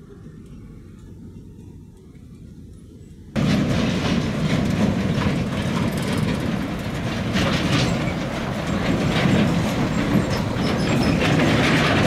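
A faint low rumble of trucks, then, a little over three seconds in, a sudden loud rise as a MAN heavy truck pulling an empty flatbed trailer drives past close by on a rutted dirt road: engine rumble mixed with the trailer rattling and clattering over the ruts.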